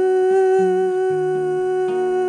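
A male voice holding one long, steady vocal note while an acoustic guitar plays underneath.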